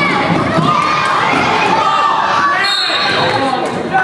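Many children's voices shouting together with a crowd cheering, over the bounce of a basketball on the court.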